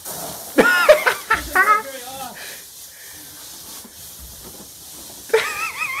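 Water spraying hard from a broken supply line under a bathroom sink, a steady hiss that does not let up.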